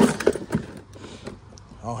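Stock plastic air box and intake tube being pulled out of a car's engine bay by hand: a quick run of plastic clicks and knocks at the start, then scattered lighter clicks.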